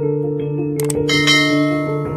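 Outro music: sustained chords with a short click, then a bright bell-like note entering about a second in.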